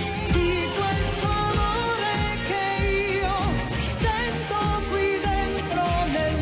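A woman singing a pop song live into a microphone, backed by a band with a steady drum and bass beat.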